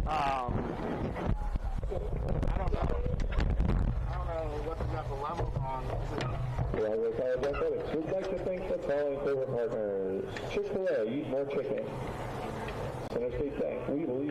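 Indistinct voices of people calling and chattering at the ballfield, none close enough to make out words. A low rumble sits under them and stops about seven seconds in.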